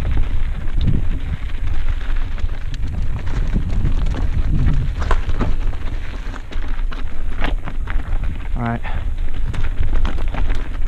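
Mountain bike riding down rocky, loose singletrack: wind buffeting the camera microphone, with tyres crunching over gravel and stones and the bike rattling in sharp ticks and knocks. A brief pitched sound comes a little before the end.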